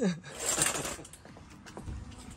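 Knife sawing through a strawberry mousse cake and scraping on the plate beneath it, a rasping scrape with small clicks that is strongest about half a second in and then fades.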